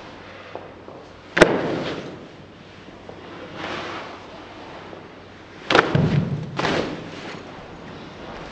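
Sharp thuds of hands striking and shoving against a body and clothing in a Wing Chun push drill, each followed by a short rustle. One comes about a second and a half in, and two more close together a little past the middle.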